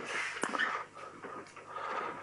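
Writing strokes on a board: scratchy rubbing, a sharp tap about half a second in, and a faint thin squeak near the end.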